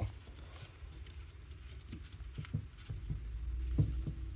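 A few faint, light knocks and taps of a cast-metal steering-rack pinion housing being handled on a wooden bench, with a couple of slightly louder knocks near the middle and just before the end.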